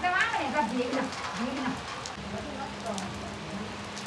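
Steady rain falling on foliage and wet concrete, an even hiss of drops. Faint voices in the first second or so, and a steady low hum joins about halfway through.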